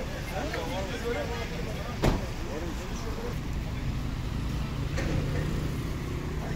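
Bystanders' voices at a roadside over a steady low rumble of vehicle engines and traffic, with one sharp knock about two seconds in.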